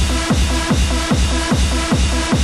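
Hard trance track from a vinyl DJ mix: a steady four-on-the-floor kick drum a little over two beats a second, under repeated synth chord stabs.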